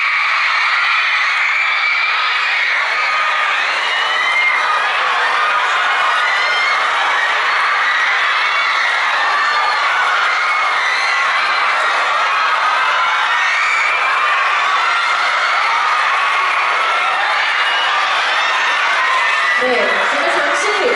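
A crowd screaming and cheering without let-up, a dense wall of many high-pitched voices.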